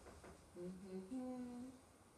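A woman humming a short two-note phrase, lower then higher, starting about half a second in and lasting just over a second, after a soft tap.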